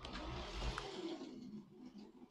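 Lego City 60337 train's battery-powered motor and plastic wheels running at full throttle on plastic track as the locomotive drives up a steep improvised ramp, a steady whir that fades toward the end. The incline is too steep for it and it does not make the climb.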